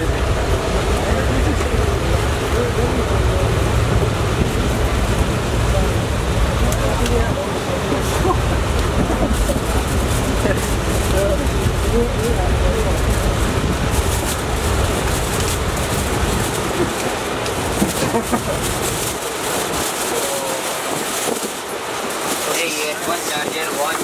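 Inside a moving passenger train carriage: a steady low rumble with rattling, with voices talking over it. The low rumble drops away about five seconds before the end, leaving the voices and rattle.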